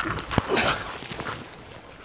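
A person diving into brush and leaf litter: a thump about half a second in, then rustling of leaves and twigs.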